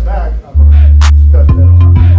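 Hip-hop backing music with a rapped vocal over a heavy bass line and sharp drum hits. The music cuts out briefly about half a second in, then the bass comes back.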